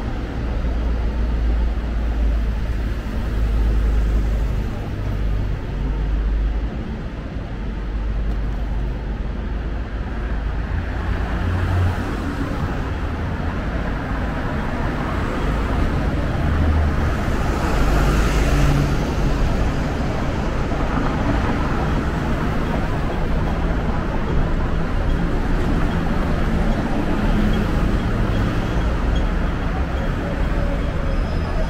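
Street traffic noise with a steady low rumble. Just past the middle a double-decker bus passes close by, the loudest moment, before the sound settles back to the general traffic.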